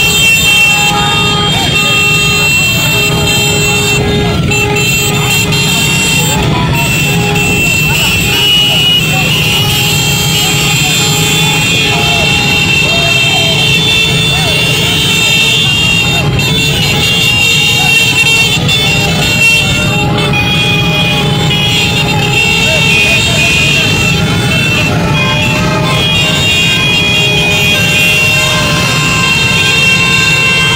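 Loud, continuous din of a large crowd of voices, with vehicle horns sounding throughout over the noise.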